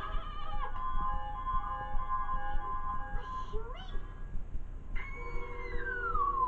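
Cartoon soundtrack of orchestral score with yowling, cat-like cries. A short upward squeal comes a little past halfway, and a long cry slides down in pitch near the end.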